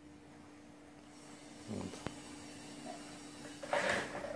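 Quiet room sound with a steady low hum, a short low murmur and one sharp light tap about two seconds in, then a brief rustle near the end.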